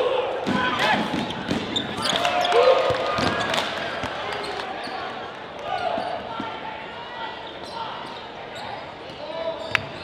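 A basketball being dribbled on a hardwood gym floor, a run of sharp knocks that are densest in the first few seconds, with voices shouting during play.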